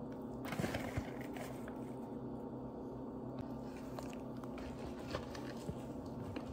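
Hands gathering chopped herbs off a wooden cutting board and setting green onions down on it. There is soft handling noise with a few light knocks on the board, the loudest about a second in, and fainter ones near the end, over a steady low hum.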